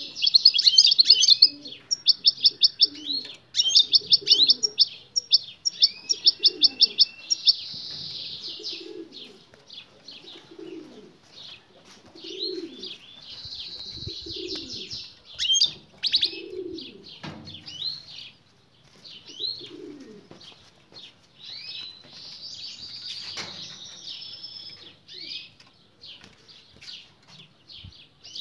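Caged European goldfinches calling: loud bursts of fast, high trilling notes for the first several seconds, then scattered varied twittering chirps. This is the female goldfinch's soliciting chatter, which prompts the male to answer in song.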